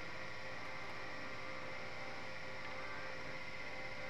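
Steady hiss with a faint, constant electrical hum: room tone with no distinct event.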